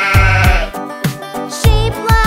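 A sheep bleats once, a wavering call of under a second near the start, over a bouncy children's song with a steady beat.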